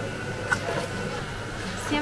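A touchscreen soda fountain dispensing a drink into a paper cup, against steady background noise, with one short click about half a second in.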